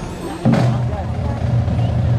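Marching band brass and percussion: a loud hit about half a second in, then a low brass note held steady by the band's sousaphones and horns.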